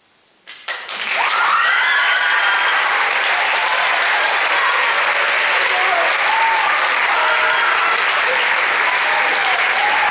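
Audience applause with some cheering voices, breaking out about half a second in and holding steady.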